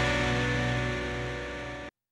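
Closing held chord of a TV show's musical ident, slowly fading and then cut off abruptly near the end.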